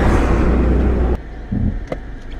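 Road and engine noise inside a moving car: a loud, steady low rumble with hiss that drops off abruptly a little over a second in, leaving quieter cabin noise with a short low thump and a faint click near the end.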